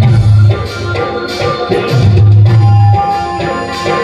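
Live devotional bhajan band playing an instrumental passage without the voice: hand percussion over a deep bass note that comes in long pulses about every two seconds.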